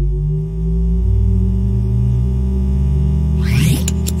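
Show intro music: a deep, sustained drone with steady tones above it, then a rising whoosh and a sharp hit near the end.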